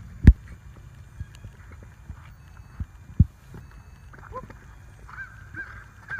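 Steady low wind rumble on a phone microphone, with a few dull thumps: a sharp one about a third of a second in and another about three seconds in.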